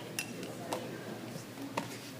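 Quiet hall ambience: a faint murmur of voices with three light clicks, about a fifth of a second in, near the middle and near the end.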